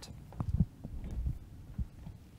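A few soft, low thumps over a faint steady hum.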